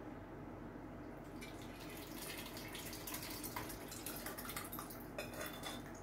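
Faint dripping and splashing of liquid, with small clinks of kitchenware. It starts about a second and a half in and runs on as a busy patter of small ticks.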